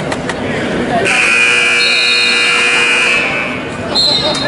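A wrestling scoreboard buzzer sounds once, a steady electronic tone held for about two and a half seconds, over the chatter of people in the gym.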